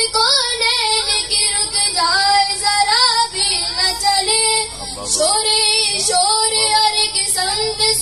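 A boy singing a devotional song solo into a microphone, his voice moving through long wavering, ornamented notes.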